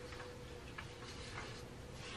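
Faint ticks, about three, evenly spaced over a steady low hum of room tone.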